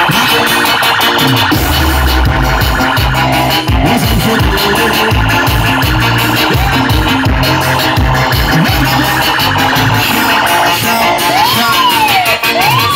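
A live band playing loud instrumental music through a large PA, with keyboard, percussion and bass and no singing. Near the end a synth tone swoops up and down several times.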